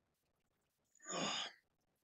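A man's single breathy sigh, about half a second long, about a second in.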